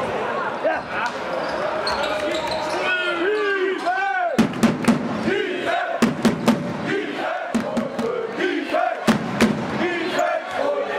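A basketball bouncing on a hard sports-hall floor, with a run of sharp, irregular bounces starting about four seconds in, among players' and spectators' voices.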